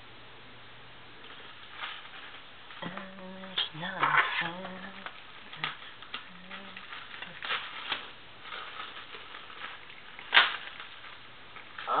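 Handling noise as a parcel's contents are tipped out and sorted: rustling packing material and scattered sharp knocks, the loudest about ten seconds in. A few short wordless vocal sounds come around the middle.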